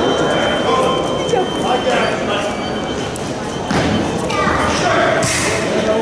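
Crowd chatter echoing in a large sports hall, with scattered voices and a few knocks, and a short loud hissing burst about five seconds in.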